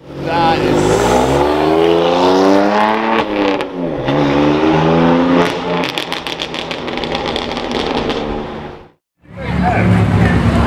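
A BMW performance car's engine revving hard as it pulls away, the note climbing, dipping briefly about three and a half seconds in, then climbing again. From about six to eight seconds in, a rapid run of sharp crackles and pops comes from the exhaust, and the sound cuts off abruptly near the end.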